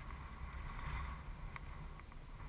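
Wind rumbling unevenly on the microphone over faint outdoor ambience, with a single faint tick about one and a half seconds in.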